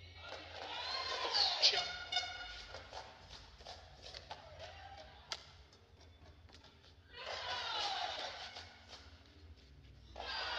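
Voices shouting and cheering in a large hall after badminton points, in two spells: one in the first two seconds or so, the other from about seven to nine seconds in. Between them come sharp taps of rackets striking the shuttlecock in a rally, with one loud one about five seconds in.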